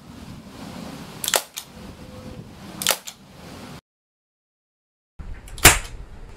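Crosman 1077 CO2 semi-automatic .177 air rifle fired twice with a suppressor fitted, two short cracks about a second and a half apart. After a brief dropout of the sound, one much louder crack from the same rifle unsuppressed, near the end.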